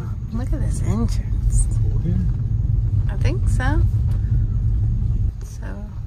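Low, uneven rumble of a moving car heard from inside the cabin, dropping off sharply near the end as the car slows. Twice, brief wordless voice sounds rise over it.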